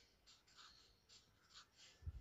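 Faint, short strokes of a felt-tip marker on sketchbook paper, several in quick succession as small raindrops are dotted in one by one.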